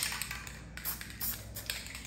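A scattered run of light clicks and taps, several within two seconds, irregularly spaced.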